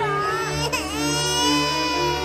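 A high-pitched crying wail: one cry that dips about three-quarters of a second in, then rises into a long held wail, over background music with a steady bass pulse.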